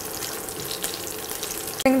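Raw peanuts, curry leaves, green chillies and cumin seeds frying in hot oil in a nonstick kadai: a steady sizzle with scattered small crackles, stirred with a silicone spatula.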